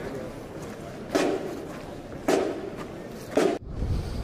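Three sharp, evenly spaced beats about a second apart, keeping walking time for a marching band. A sudden cut near the end gives way to a steady low rumble.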